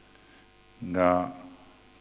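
A faint, steady electrical mains hum fills a pause in speech. About a second in, a man's voice says a single word over it.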